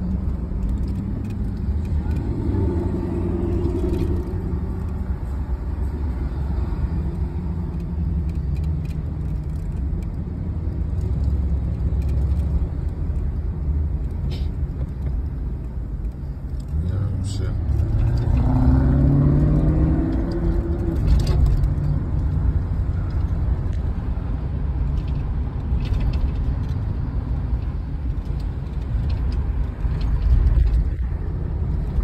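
Box Chevy Caprice driving, heard from inside the cabin: a steady low engine and road rumble, with the engine note rising as the car accelerates a little past halfway.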